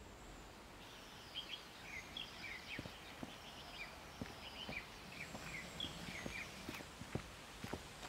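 Faint outdoor woodland ambience with small birds chirping repeatedly, and irregular footsteps on a dirt path starting about a second and a half in.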